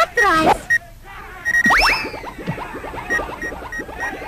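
Cartoon sound effects: a brief voice at the start, then a quick rising whistle-like zip and a fast string of short falling electronic blips. A faint, steady pulsing beep runs underneath.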